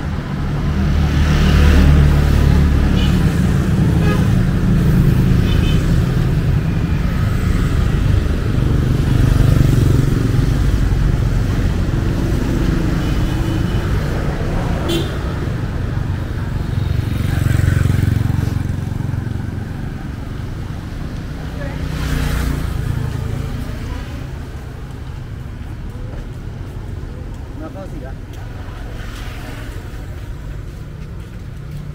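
Road traffic: cars and motorbikes passing along the street, the low rumble swelling and fading several times as vehicles go by.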